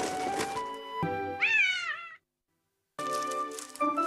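A kitten's high meow, wavering in pitch, about a second and a half in, over cartoon background music. The sound cuts out completely for just under a second right after the meow.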